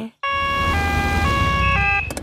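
Cartoon emergency car's two-tone siren, switching between a high and a low note about every half second, over a low rumble.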